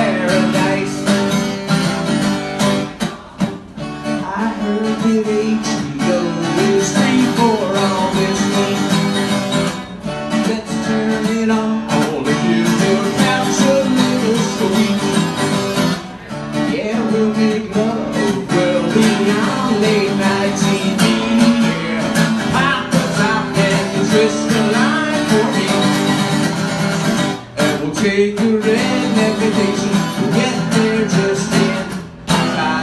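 Solo acoustic guitar strummed steadily through a song, with a few brief breaks in the playing.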